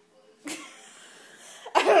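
A person coughs once, sharply, about half a second in. A louder burst of voice follows near the end as talk starts again.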